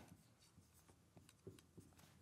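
Near silence with faint strokes of a marker pen writing on a whiteboard, a few small marks in the second half.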